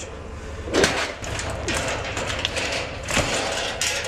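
Scattered knocks and scrapes as a tall stainless-steel patio heater and its wire guard are handled and shifted, over a steady low hum.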